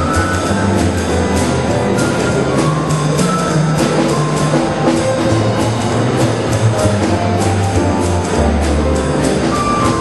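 A small jazz combo of saxophone, piano, bass and drums playing live, with a steady cymbal beat over the bass.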